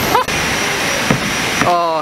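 Steady rushing noise of a busy city street, with a short rising voice call just after the start and a louder drawn-out call near the end.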